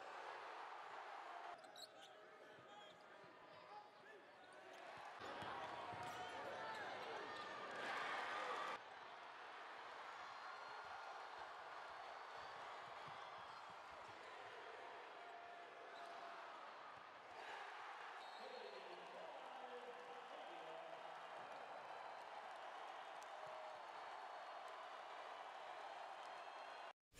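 Faint basketball arena game sound: crowd noise with a basketball bouncing on the court. It swells louder about five seconds in and drops off abruptly near nine seconds.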